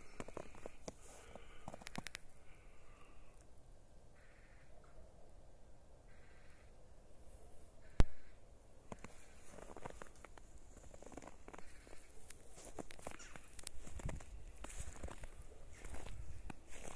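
Footsteps crunching in fresh snow, starting about nine seconds in and growing louder towards the end. Before that a bird calls about five times, and a single sharp click about eight seconds in is the loudest sound.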